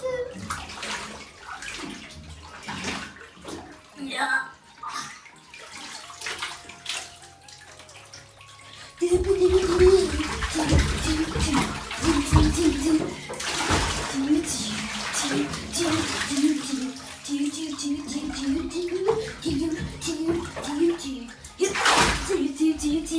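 Water splashing and sloshing in a bathtub full of water balloons as they are stomped on and squeezed. About nine seconds in it gets louder, with many sudden splashes over background music.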